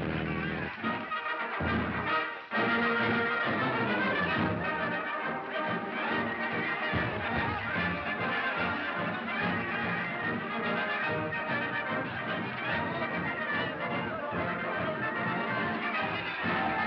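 Brass band music, dipping briefly about two seconds in before carrying on.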